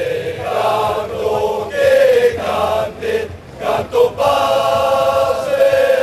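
A group of voices singing an anthem together, in held notes and phrases with short breaks between them.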